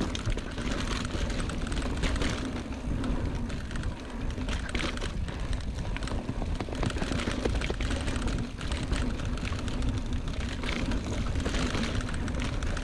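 Mountain bike rolling along a dirt singletrack: tyres on the dirt and the bike rattling over the trail with dense, rapid clicks and clatter, over a steady low wind rumble on the microphone.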